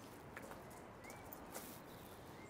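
Faint, nearly silent background with a short high chirp about a second in.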